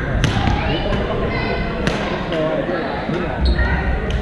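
Badminton rackets striking shuttlecocks: two sharp cracks, one just after the start and one a little before the middle, with fainter hits from other courts, over the chatter of players in a large, echoing sports hall.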